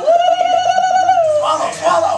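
A single long whistle blast lasting just over a second, steady and then dropping in pitch as it ends, signalling the start of an eating race. Excited shouting follows.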